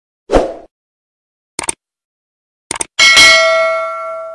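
Subscribe-button animation sound effects: a short low hit, a double click about a second and a half in, another double click near three seconds, then a bell ding that rings on and slowly fades.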